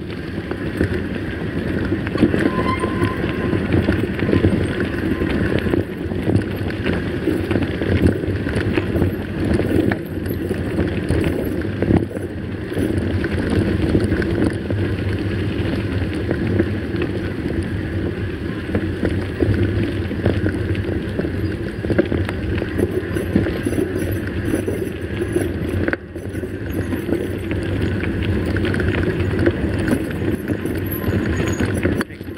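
Mountain bike rolling along a dirt road: continuous tyre crunch on loose dirt and gravel, with steady rattling of the bike over the bumps.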